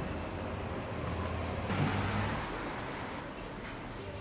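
Street traffic: a steady low road hum, with a vehicle passing and swelling louder about two seconds in.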